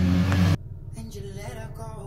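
A vehicle engine running with a steady low hum, cut off abruptly about half a second in, leaving a quieter low rumble.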